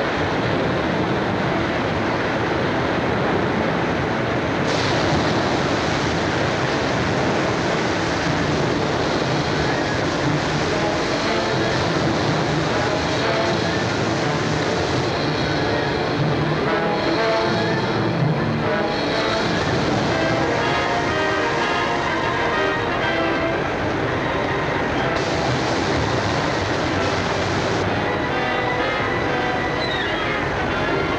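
Whitewater rapids rushing steadily, with film score music over the noise; the music's tones stand out more from about a third of the way in.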